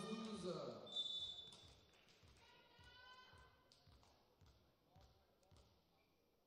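Faint volleyball-hall sound: voices die away in the first second, a short high whistle sounds about a second in, and a few scattered knocks of a ball bouncing on the court follow.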